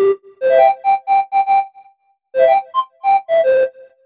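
The Synth1 software synthesizer playing its Pan Flute factory preset from a MIDI keyboard. Two short phrases of quick notes with a brief pause between them: the first steps up and repeats one high note, the second rises and falls back down.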